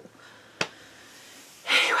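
A pause in a woman's speech: quiet room tone, a single short click just over half a second in, then a quick audible breath in near the end as she starts to talk again.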